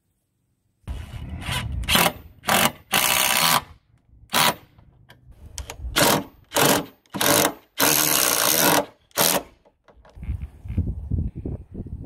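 DeWalt 20V XR cordless impact wrench running in a series of about ten bursts, most brief and two lasting about a second each.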